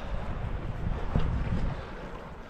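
Wind noise on the camera microphone, low and uneven, over the faint wash of shallow sea water.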